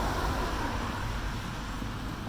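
Steady low rumble of outdoor street noise, easing off slightly.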